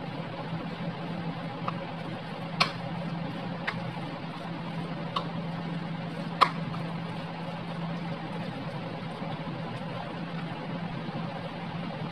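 Metal spoon stirring canned tuna with mayonnaise in a bowl, with a few sharp clicks of the spoon against the bowl, the loudest about six and a half seconds in, over a steady low hum.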